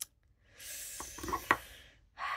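Light clicks of a fountain pen against an ink bottle as the pen is drawn out and handled, three small ticks with the sharpest about a second and a half in, over a soft breathy hiss.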